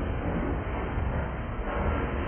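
Freight train cars rolling past at close range: a steady low rumble of steel wheels on rail.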